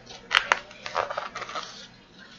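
Paper page of a picture book being turned: two sharp crackles as the page flips, then a brief rustle of paper.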